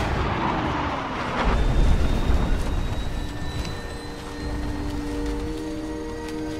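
Film soundtrack of an airliner exploding and crashing: a deep rumbling blast swells about a second and a half in and fades, then steady held tones come in over the rumble.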